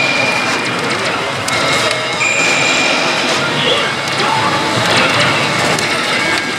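Loud, unbroken din of a pachinko and pachislot parlor: a dense wash of noise from the surrounding machines, with a high electronic tone held briefly near the start and again about two seconds in.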